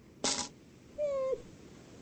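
Two short high cartoon calls: a brief squeaky burst about a quarter second in, then a higher held note about a second in that dips at its end.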